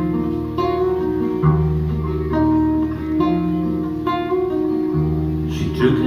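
Live band playing an instrumental passage between sung lines: acoustic guitars picking a new note or chord about once a second over long held low bass notes. A singing voice comes in right at the end.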